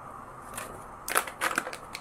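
Small plastic seasoning-powder sachet crinkling as it is handled and folded, a string of sharp crackles starting about a second in.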